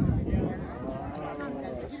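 A cow mooing in one long call that rises and then falls in pitch.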